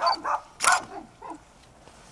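A dog barking: a few short barks, the loudest just under a second in, then quiet.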